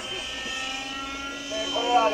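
Distant model helicopter in flight, its O.S. 61 two-stroke glow engine and rotors giving a steady high-pitched whine. A voice starts near the end.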